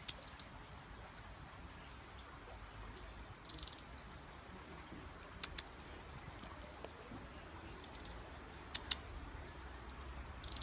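European robin singing faintly in short, high, warbling phrases separated by pauses, with a few sharp clicks in between.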